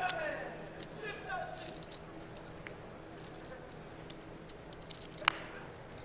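Faint voices and a steady background hum at a poker table, with scattered light clicks. One sharp click, the loudest sound, comes a little after five seconds in.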